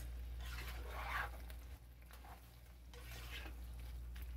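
A silicone spatula stirring bowtie pasta and chicken through a thick, creamy alfredo sauce in a skillet: soft, wet, irregular stirring noises, most distinct about a second in and again near the end, over a steady low hum.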